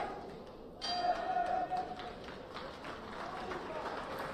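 Boxing ring bell ringing once about a second in to end the round, over shouting from the hall.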